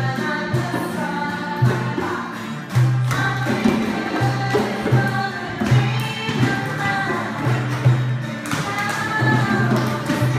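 A group of children and adults singing a song together while beating hand drums, djembes and a bucket drum, in a steady, repeating rhythm.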